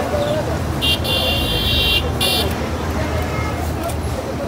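A high-pitched vehicle horn sounds twice in street traffic, a blast of about a second starting near the beginning and a short one just after it, over a steady rumble of traffic and voices.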